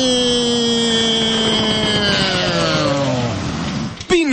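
A sound effect in a radio advert: one long droning tone, rich in overtones, that slowly sinks in pitch and dies away about three and a half seconds in, like a motor winding down.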